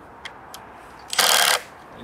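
Makita cordless drill driving a screw through the birdhouse's wooden mounting board into the pine trunk: one short, loud burst of about half a second, about a second in.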